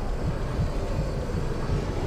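Low, steady mechanical rumble of an open lift platform descending its shaft.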